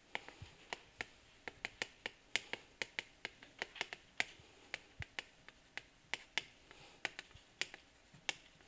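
Chalk writing on a chalkboard: an irregular run of sharp clicks and taps, several a second, as the chalk strikes and drags through each stroke of handwriting.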